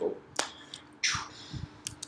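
Two sharp clicks about a second and a half apart, with a short breath between them.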